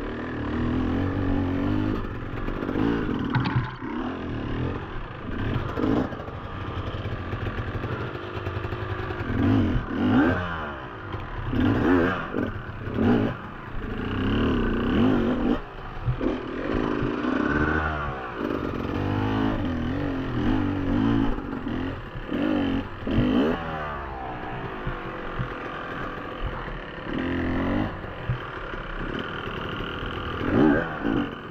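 A Beta enduro dirt bike's engine revving up and down continuously as it is ridden over rough, rocky ground, with several hard bursts of throttle, and the bike clattering and knocking over the rocks.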